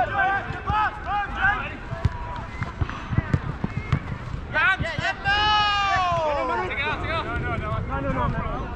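Footballers shouting across an outdoor pitch: short calls near the start and one long falling shout in the middle, over low wind rumble on the microphone, with a few dull thuds about three seconds in.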